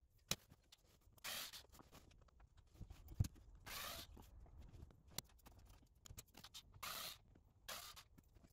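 Faint handling noise from hands working around a car's dashboard: four short scratchy swishes a couple of seconds apart, with a few light clicks between them.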